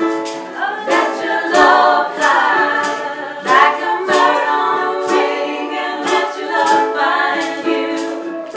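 Two ukuleles strummed in a steady rhythm, accompanying women's voices singing together.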